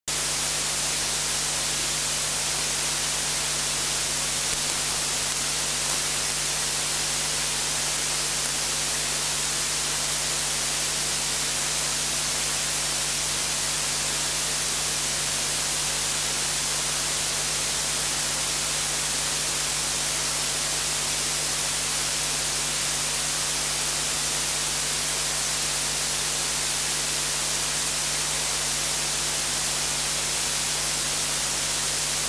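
Steady hiss, strongest in the treble, with a low steady hum underneath; nothing changes over the whole stretch.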